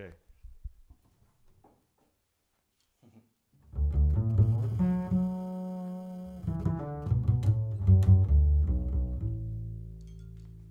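Upright double bass starting a slow solo ballad intro about three and a half seconds in, low notes, some held long, after a near-silent pause.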